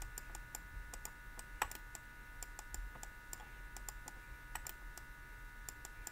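Faint, irregular light clicks and taps of a stylus on a tablet screen while writing by hand, several a second, over a faint steady electrical hum.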